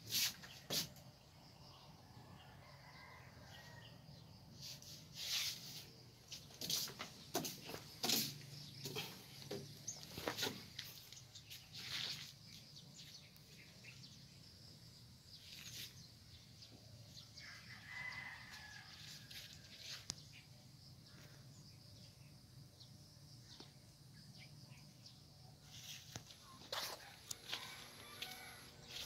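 A rooster crowing faintly in the distance, twice, once early and again about two-thirds of the way through, among scattered soft knocks.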